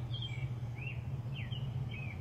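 Small birds chirping: a handful of short, quick chirps spread through the moment, over a steady low hum.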